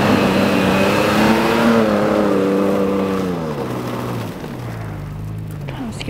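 Toyota Tacoma pickup's engine revving under load as the truck churns its tyres through deep, slushy snow to get unstuck; the engine note rises, then falls and settles lower and quieter about four seconds in.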